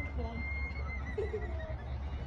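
A horse whinnying: one high call held for about a second and a half that ends in a quaver, over distant voices and a steady low hum.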